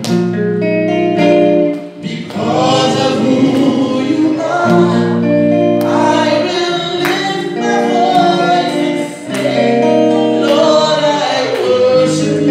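Gospel worship music: a woman sings into a handheld microphone over instrumental accompaniment, in long held phrases with short breaks about two seconds in and again about nine seconds in.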